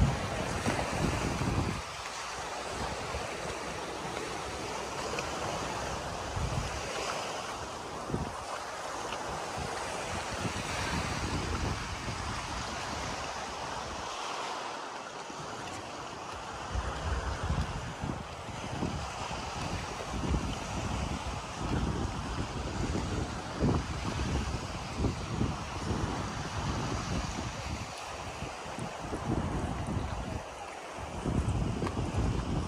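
Wind rushing over the microphone, with irregular low rumbling buffets from gusts that come thicker in the second half.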